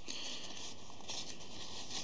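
Faint rustling of thin card as a folded origami boat is handled and turned over in the hands, over a steady room hiss.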